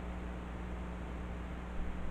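Steady room noise: an even hiss with a low, constant hum, with a brief faint sound near the end.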